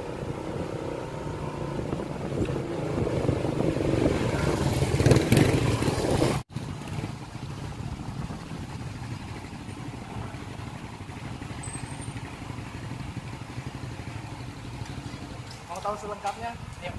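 Two Suzuki GSX-R150 motorcycles, each with a single-cylinder engine, riding up and growing louder for about six seconds. The sound then cuts off abruptly and gives way to a quieter, steady running of the bikes as they roll slowly and idle.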